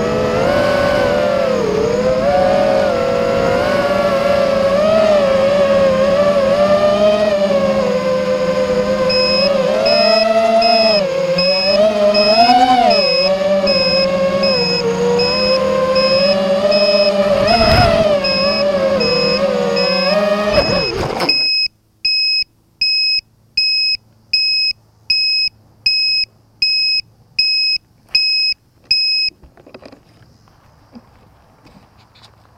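Multirotor drone's electric motors and propellers whining in flight, the pitch rising and falling with the throttle, then cutting off suddenly about two-thirds of the way through as it lands. A high electronic beeper pulses steadily, about three beeps every two seconds. It is faint under the motors from the middle and clear once they stop.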